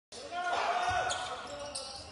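Live game sound from a basketball court: a basketball bouncing on the floor with a few short sharp knocks, and players' voices calling out.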